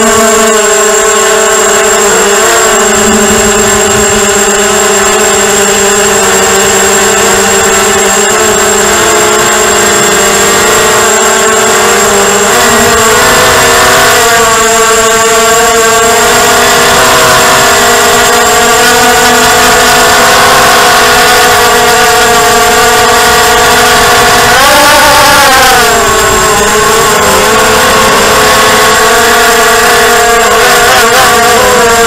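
ZMR mini quadcopter's brushless motors and propellers whining as heard from its onboard camera, the pitch drifting with throttle during acro flight. A sharp rise and fall in pitch comes about 25 seconds in, with a thin high steady tone above throughout.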